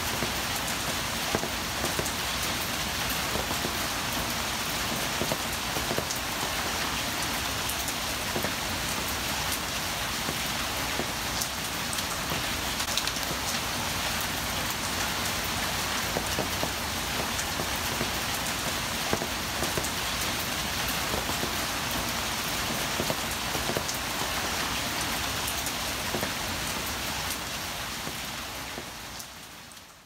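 Steady rain falling, with many separate drops striking close by and water dripping off an awning edge. It fades out over the last couple of seconds.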